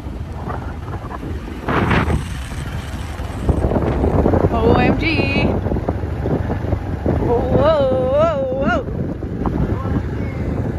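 Wind buffeting the microphone of a moving motorbike, a steady low rumble. A person's voice calls out in long, wavering whoops twice in the second half.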